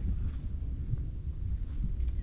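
Wind buffeting the microphone: a low, uneven rumble with no other clear sound above it.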